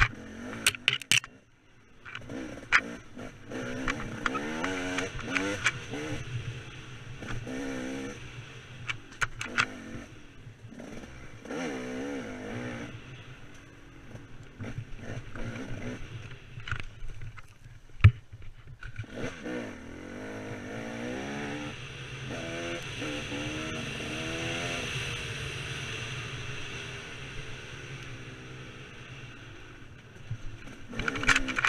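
KTM 300 two-stroke dirt bike engine revving up and down over and over as it is ridden hard along a tight trail. Sharp knocks and clatter are mixed in, with one loud knock a little past halfway.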